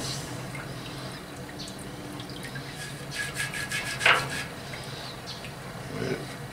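Hot degreasing solution of water and Purple Power dripping and splashing back into a drum hot tank as a V8 engine block is lifted out of it. A quick run of drips comes about three seconds in, with a sharper splash just after four seconds, over a steady low hum.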